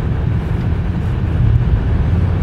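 Steady low rumble of road and engine noise inside a moving car's cabin, driving in freeway traffic.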